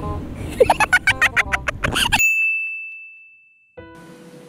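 A quick run of bright chime notes, then a single high ding that rings on and fades away, over background music that drops out under it.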